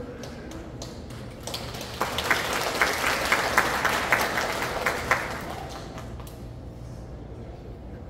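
Audience applauding: the clapping swells about a second and a half in, with a run of loud single claps close to the microphone, then dies away after about five seconds.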